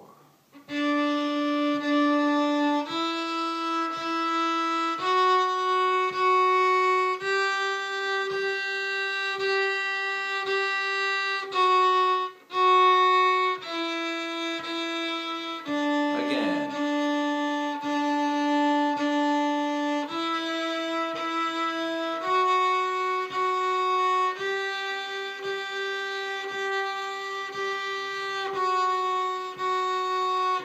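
Fiddle bowed slowly on the D string in a beginner fingering exercise. It steps up from open D through first, second and third finger (E, F-sharp, G) and back down to open D, with two even bow strokes on each note, then starts up the scale again about two-thirds of the way through.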